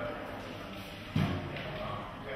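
Guests' voices in conversation, with one short dull thump just over a second in, the loudest sound.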